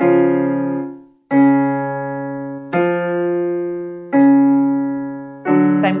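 Electronic keyboard playing five chords in turn, each struck and left to fade, about one and a half seconds apart. They give the pitches for the next, higher step of a vocal warm-up exercise.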